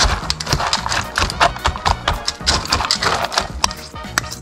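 A metal fork clinking and scraping against stainless steel dog bowls while mixing canned meat into dry kibble: a quick, uneven run of clicks and rattles.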